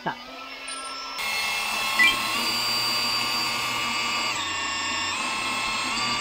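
Cordless handheld pressure washer running on water drawn from a bucket: a steady motor-and-pump whine that steps up louder about a second in, then dips slightly in pitch a few seconds later.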